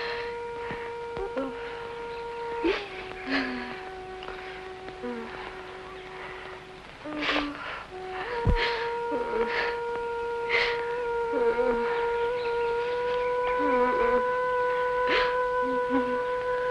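Film score: one long-held instrumental note that drops lower about three seconds in, rises back about eight seconds in, and is held from there. Short voice sounds and soft clicks break in every second or so, with a low thump about eight and a half seconds in.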